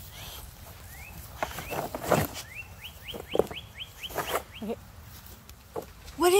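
A songbird whistling a series of short rising notes, a few spaced out at first and then a quick run of about eight in a row, with several louder scuffing or rustling knocks among them.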